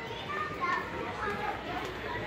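Indistinct voices of other shoppers in the background, some of them high-pitched.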